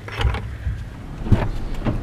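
Low steady rumble of a car heard from inside the cabin, with a knock about a second and a half in and another near the end.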